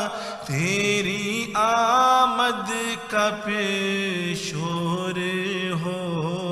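A man's solo voice chanting a prayer in long, drawn-out melodic phrases, with short pauses for breath between them.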